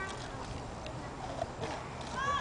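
Black Labrador gnawing on a birch log: a few faint, scattered cracks and clicks of teeth on wood.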